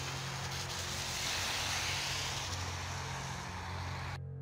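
Footsteps crunching through packed snow, heard as a steady hiss that swells about a second in, over a low steady hum.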